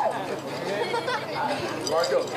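Crowd chatter: many voices talking over one another, none clear enough to make out.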